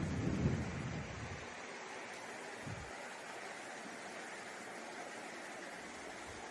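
A steady rushing hiss of room noise, with a low rumble fading out over the first second and a half.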